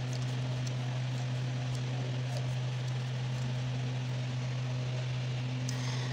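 Steady low hum with an even hiss, room or equipment noise with no speech over it. A few faint soft ticks come through as a crochet hook and yarn are worked.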